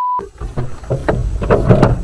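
A steady one-tone censor bleep cuts off just after the start, leaving the low rumble of a vehicle heard from inside. A man's voice begins near the end.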